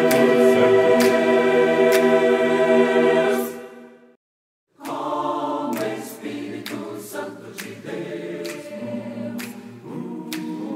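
A mixed choir holds the final loud chord on "Deus", which fades out about four seconds in. After half a second of silence, choral singing starts again, softer.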